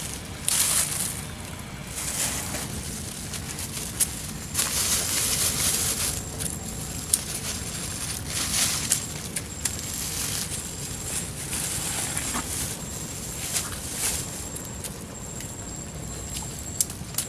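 Nylon mesh of a collapsible bubu naga shrimp trap rustling and scraping in bursts as it is handled, with scattered sharp clicks and a low steady rumble underneath.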